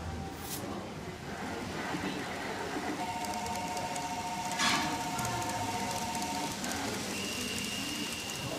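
Murmur of people's voices and general hall noise. A steady two-note electronic tone sounds for about three and a half seconds in the middle, with a single sharp click partway through it, and a higher single tone starts near the end.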